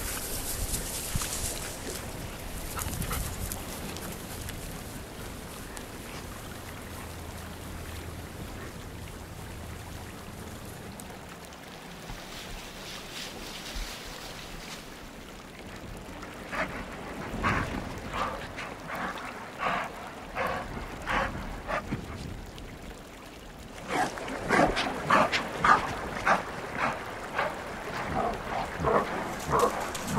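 Gray wolves barking and yipping: short, sharp calls about once a second from midway, coming faster and louder in the last few seconds.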